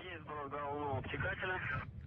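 Speech over a radio link: a voice on the launch communications loop, sounding narrow and telephone-like.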